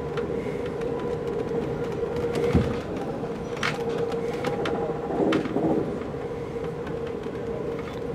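Amtrak Coast Starlight passenger train running at speed, heard from inside the car: a steady hum over a rumble, with a few sharp clicks and knocks.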